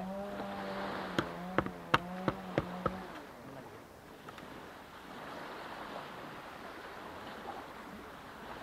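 Six sharp knocks about a second apart or less, bunched in the first three seconds: plastic recovery traction boards being knocked and handled as sand is shaken off them. A steady low hum runs under the first three seconds, and wind noise fills the rest.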